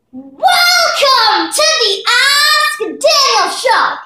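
A child singing loudly in a sliding voice, in several short phrases with brief breaks between them and a few held notes.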